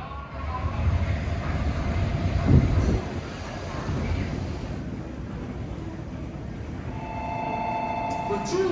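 Commuter train running along a station platform, a low rumble that is loudest in the first three seconds and then settles into a steadier hum. About a second before the end, a station chime of a few steady tones begins.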